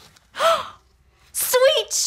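A woman's short excited gasp, rising then falling in pitch, about half a second in, followed near the end by a high, lively voice starting up.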